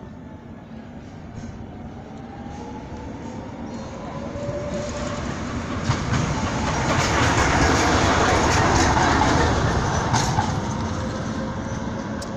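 A vehicle passing close by: a rushing noise that builds over several seconds, peaks past the middle, then eases off, with faint whining tones running through it.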